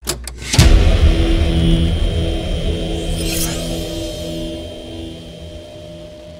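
Cinematic logo sound effect: a heavy low boom about half a second in, then a low droning tone that slowly fades, with a whoosh about three seconds in.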